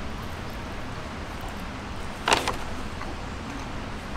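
Steady low background rumble with one short, sharp sound a little over two seconds in.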